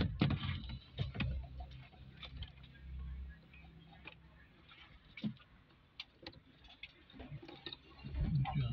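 Irregular light clicks and knocks from a car radio head unit and its wiring plugs being handled in an open dashboard, with a cluster of louder knocks in the first second or so and another single knock about five seconds in.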